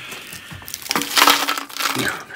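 A woven plastic sack rustling and crinkling as a hand rummages in it for dried red chillies, loudest about a second in.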